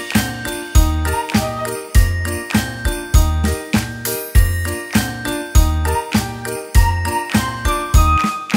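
Background music with a steady beat and bright, bell-like jingling notes.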